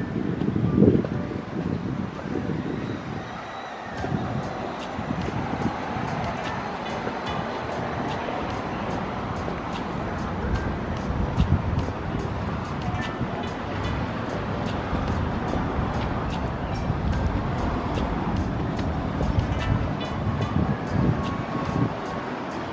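Busy street sound: car traffic in the road with music playing in the background and now and then voices.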